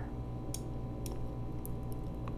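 A few faint computer mouse and keyboard clicks, spaced irregularly, over a steady low electrical hum.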